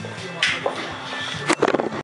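Background music with steady low held notes, broken by a sharp sound about half a second in and a burst of rapid sharp sounds near the end.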